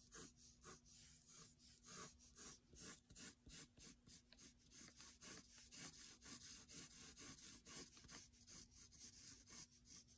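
Graphite pencil sketching short curved strokes on drawing paper: a faint run of separate scratches, about three a second, with the pencil lifted between strokes rather than scribbled.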